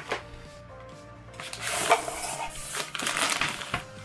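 Cardboard packaging and a thin plastic bag rustling and crinkling in bursts as a power strip is slid out of its box by hand.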